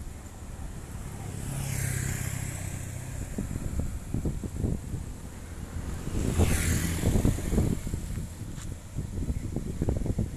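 Two motor vehicles driving past, about two seconds in and again past the middle, each swelling and fading with a low engine hum, over wind rumble on the microphone.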